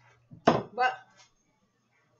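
Kitchenware clattering against the counter: one sharp knock about half a second in, with a short clink after it.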